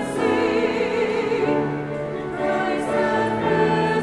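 A small church choir singing a slow hymn in long held notes, with a high voice's vibrato on top and a short break between phrases about halfway through.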